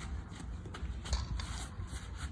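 Footsteps on infield dirt, soft steps about three a second, over wind rumbling on the microphone.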